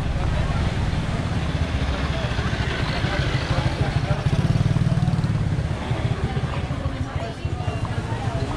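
A motorbike engine running as it rides up and passes close by, loudest about four to five seconds in, then fading. People's voices are heard along with it.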